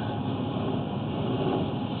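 Steady rumble and hiss with no distinct events, from machinery or equipment running in the background.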